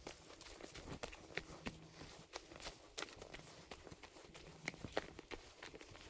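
Footsteps on a forest floor of dry leaf litter and twigs, irregular steps with a few sharper clicks.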